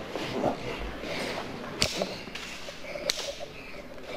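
Wooden pencils striking each other in a schoolroom pencil fight: two sharp clicks, a little over a second apart, under faint voices.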